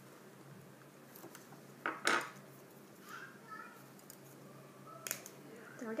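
Thin rubber loom bands pulled by hand until they tear. There is a sharp snap about two seconds in, the loudest sound, and a smaller snap about five seconds in.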